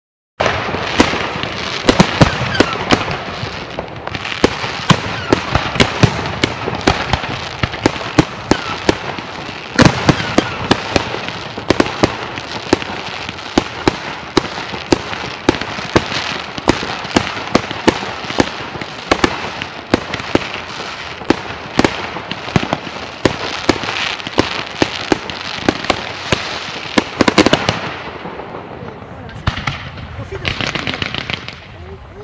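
Fireworks display: aerial shells and firecrackers bursting in rapid, irregular sharp bangs over a continuous din. It starts suddenly about half a second in and keeps going without a break.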